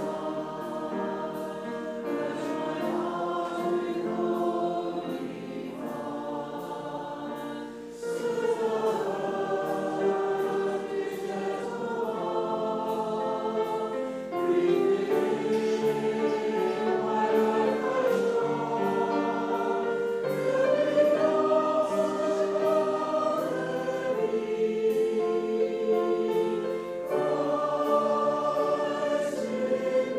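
A congregation singing a hymn together in slow, held notes, growing louder partway through.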